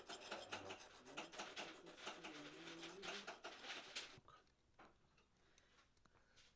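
A hand file rasping on the edge of a pure gold tube bangle in quick back-and-forth strokes, stopping about four seconds in, followed by a few faint ticks.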